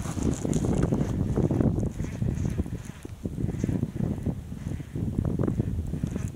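Wind buffeting the microphone in gusts, a loud uneven low rumble.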